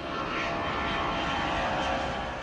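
Airplane flying overhead: a steady engine rush with a thin whine running through it, setting in suddenly.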